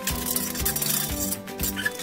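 Broken tile and rubble from a tiled stove clattering into a metal tub for about the first second and a half, with a metallic rattle. Background music with a steady beat runs underneath.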